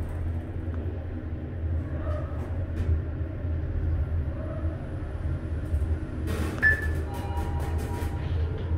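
Mitsubishi DiamondTrac traction elevator cab travelling, a steady low rumble and hum. Near the end there is a brief rush of noise, then a ringing tone.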